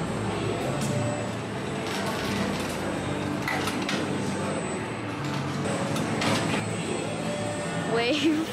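Hubbub of a busy indoor amusement arcade: indistinct crowd chatter over a steady hum, with a few short knocks.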